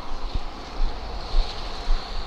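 Wind rumbling on a body-worn camera's microphone, a low steady noise, with one brief low thump about a third of a second in.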